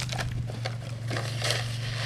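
Footsteps crunching on loose, freshly plowed dirt, a step every third of a second or so, over a steady low hum.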